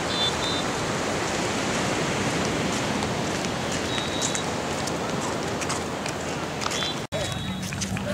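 Steady rushing outdoor noise with indistinct voices of people nearby and a few short high chirps. The sound cuts out for an instant about seven seconds in.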